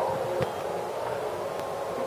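A pause in speech: steady room tone with a faint hum and a soft tick about half a second in.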